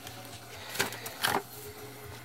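Pages of a spiral-bound scrapbook notebook being turned by hand: two short paper rustles about a second in, over a faint steady low hum.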